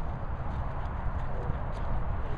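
Low, uneven rumble with soft irregular thuds: wind and handling noise on a handheld camera's microphone, with footfalls on grass.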